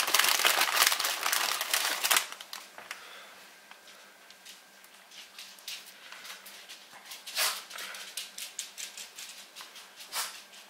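Plastic packaging of pepperoni crinkling loudly for about the first two seconds as slices are pulled out, then softer rustles and light ticks as the slices are handled and laid on the pizza, with one louder crinkle about seven seconds in.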